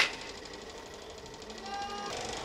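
A baseball bat hitting a pitched ball: one sharp crack right at the start, followed by the steady background of batting practice. A short, faint call from a voice near the end.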